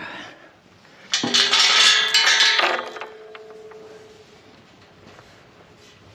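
Steel tube livestock gate and its chain latch clanking and rattling as the gate is opened, starting suddenly about a second in and lasting about a second and a half. The metal rings on after the clatter and fades out a couple of seconds later.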